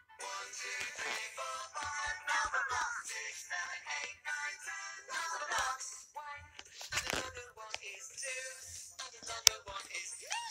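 Children's cartoon soundtrack playing from a tablet's small speaker: music with sung voices.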